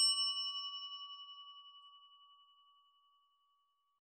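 A single bell-like chime ding that rings out and fades away over about two seconds.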